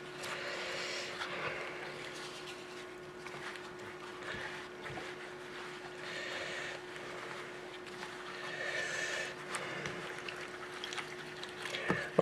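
Wet fabric being kneaded and pressed by gloved hands in a metal bowl of dye liquid: soft squelching and sloshing that swells a few times, over a faint steady hum.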